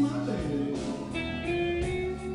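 Live band playing a blues, with an electric guitar lead over drums, bass and keyboard.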